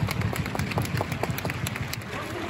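A small group of people clapping their hands, a quick, uneven patter of several claps a second.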